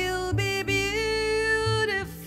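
Live jazz ballad: a woman singing a short phrase that settles into a long held note, over soft piano chords and low plucked bass notes.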